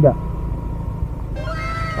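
Rusi Gala 125 scooter running down the road with a steady low rumble of engine and wind. About two-thirds of the way in, a high, drawn-out squealing cry starts suddenly and slowly falls in pitch.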